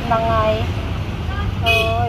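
A vehicle's steady low rumble under a woman talking, with a short horn toot near the end.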